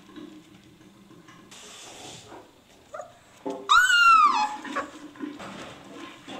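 Leonberger puppy giving one short high-pitched yelp about four seconds in, its pitch arching up and then falling away. Softer rustling of puppies moving on newspaper bedding comes before it.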